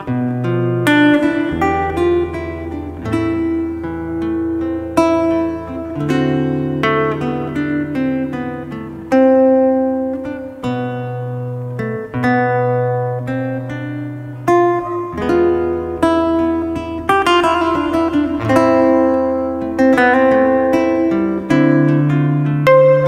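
Fingerpicked acoustic cutaway guitar playing a solo melody over sustained bass notes, in a slow, lyrical instrumental.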